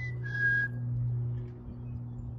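A chickadee's two-note whistled song: a short higher note, then a slightly lower one held about half a second. A steady low hum runs underneath.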